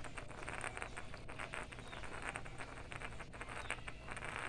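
Wooden spinning top (trompo) spinning on its tip on a rough concrete floor: a continuous scratchy rasp full of rapid little clicks.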